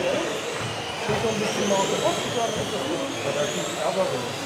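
The electric motors of 2WD RC race cars whine as they run, the high pitch rising and falling as they accelerate and slow. Hall chatter sits underneath.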